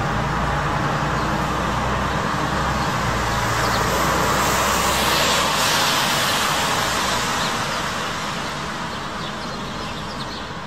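Road traffic passing: a vehicle's low engine rumble and tyre noise swell to loudest around the middle and then fade away.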